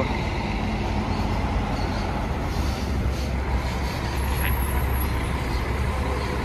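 Diesel engine of an Emtram intercity coach running as it moves slowly across the bus station yard: a steady low rumble, a little heavier from about halfway through.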